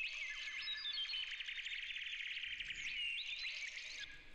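Texture effects sample, a foley-style stereo layer squashed by OTT multiband compression, playing back quietly: a thin, high band of breathy hiss dotted with many small chirps, ticks and short pitch glides.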